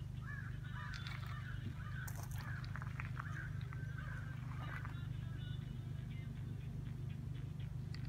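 Birds calling now and then with short, scattered calls over a steady low hum.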